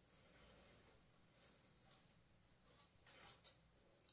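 Near silence: room tone, with one faint, brief handling sound about three seconds in.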